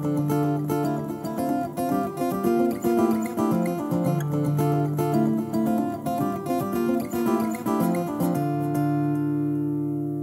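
Layered acoustic guitar parts from a Takamine, looped on a Boss RC-300, playing a busy picked and strummed pattern. About eight and a half seconds in the picking stops and one held chord rings on.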